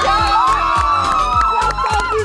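A small group cheering and whooping, with several long held shouts that rise at the start and hold for almost two seconds, over background music with a steady beat.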